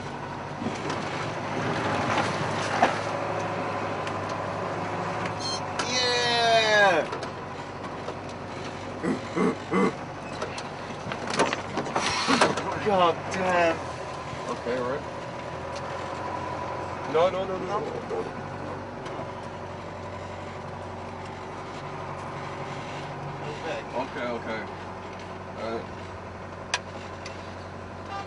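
A vehicle's engine running steadily while it drives, with people's voices calling out over it several times, the loudest a long cry that falls in pitch about six seconds in.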